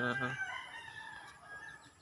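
A rooster crowing: one long, drawn-out call held for over a second.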